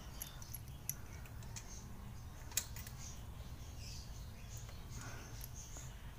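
Faint metal clicks of hand tools on a motorcycle's valve tappet adjusting screw as it is tightened, the two clearest about one second and two and a half seconds in, over a quiet background.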